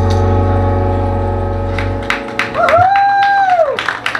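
A live country band's last chord rings out on guitars and bass and dies away about two seconds in. Scattered clapping follows, with one held whistle that rises, holds and falls.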